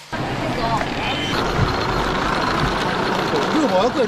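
City street ambience: a steady wash of traffic noise, with a few indistinct voices of passers-by.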